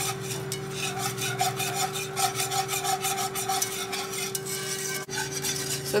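Wire whisk scraping rhythmically around a pan of thickening milk-and-flour gravy, with a short break about five seconds in.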